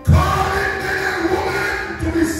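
Singing with musical accompaniment, coming in suddenly with a deep bass note and held sung notes that carry on through.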